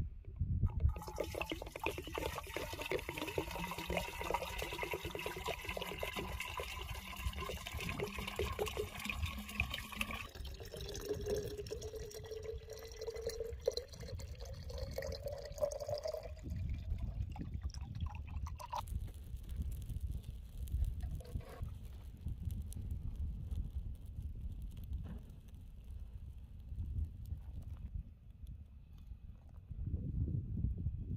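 Water poured from a plastic container into an old metal kettle: splashing at first, then a tone rising in pitch as the kettle fills, ending about sixteen seconds in.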